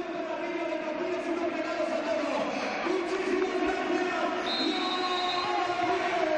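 Handball arena crowd noise, steady, with held pitched tones running through it.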